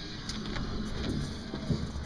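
A door being opened, with a few soft knocks over a low rumble.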